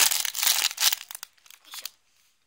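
Clear plastic wrapping bag crinkling as hands squeeze a homemade squishy inside it, loudest in the first second, then a few lighter crinkles near the end.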